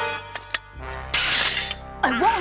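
Cartoon soundtrack: a musical chord cuts off and a few sharp metallic clicks come from a steel foot trap clamped on a shoe, with a stick forced against it. A low musical drone then starts, and about a second in there is a short rushing noise.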